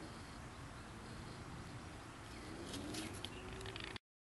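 Diamondback terrapin scraping garden soil with her hind feet as she covers her nest: a few short scratchy scrapes about three quarters of the way in, over a faint outdoor background.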